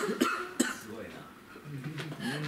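A person coughing, two short sharp coughs in the first second, followed by a man starting to speak near the end.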